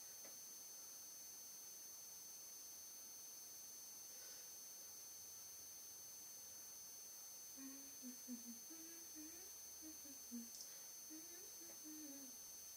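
Near silence with a faint steady hiss, then over the last few seconds a woman faintly humming a wandering tune in short phrases.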